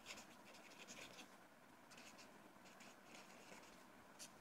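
Faint scratching of a marker pen writing on paper: a quick, irregular run of short strokes.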